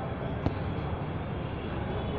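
Steady background room noise, an even rumble and hiss, with one short click a little under halfway in.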